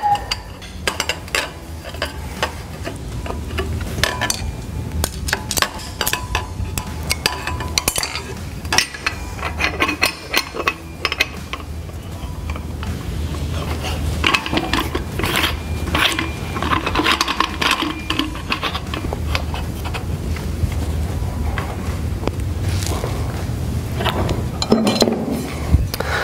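Steel parts clinking, knocking and scraping as a collet and back nut are fitted onto a clamshell split-frame pipe lathe and its spanner wrenches are handled. Irregular clinks throughout, over a steady low hum.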